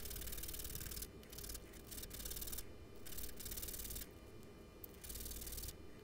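A small wooden piece is rubbed by hand back and forth across a sheet of sandpaper, giving scratchy sanding strokes in bursts of about a second with short pauses between them.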